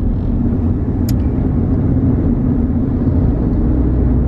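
Car engine idling, a steady low rumble heard inside the cabin, with one short click about a second in.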